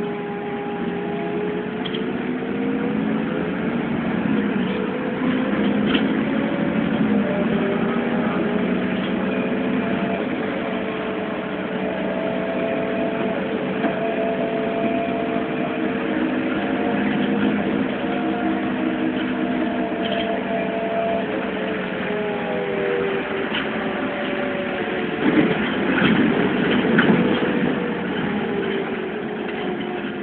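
Interior sound of an Irisbus Citelis CNG city bus under way, its Iveco Cursor 8 CNG engine and driveline droning with a pitch that rises over the first ten seconds, holds, then eases down about two-thirds of the way through. A louder, rougher spell follows near the end.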